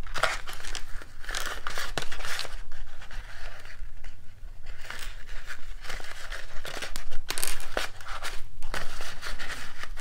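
Narrow gingham ribbon being pulled, looped and tied into a bow around a paper pillow box, giving irregular rustling and crinkling handling noises.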